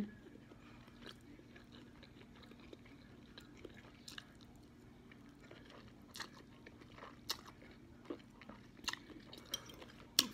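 Faint chewing and mouth sounds of someone eating instant noodles, with scattered small clicks about once a second, over a faint steady hum.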